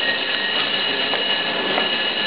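Indistinct murmur of voices and room noise in a council chamber, with a faint steady high whine held throughout.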